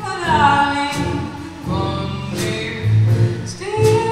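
Live small-band music: a voice singing, with a downward slide about half a second in, over upright bass, drums and acoustic guitar.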